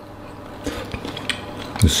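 A person chewing a mouthful of rice, with a few faint clicks; a man's voice starts near the end.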